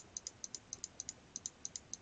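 Computer mouse button clicked rapidly, a run of faint, sharp clicks at about seven a second.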